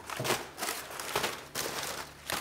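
Brown packing paper rustling and crinkling in a cardboard box as hands rummage through it, in several short, irregular bursts.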